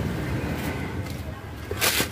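Steady low rumble of a car heard from inside its cabin, with a brief loud rustling burst near the end.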